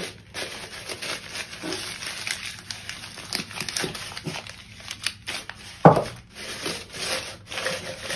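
Crumpled brown packing paper rustling and crinkling as it is gathered around a glass jar and bound tight with elastic bands, with scattered small taps and one sharp knock about six seconds in.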